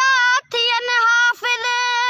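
A boy singing a Sindhi devotional song unaccompanied, in a high voice: three held, slightly wavering sung phrases with short breaths between them.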